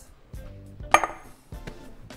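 A glass mixing bowl knocks once against a stone worktop about a second in, a sharp clink with a short ring, over soft background music.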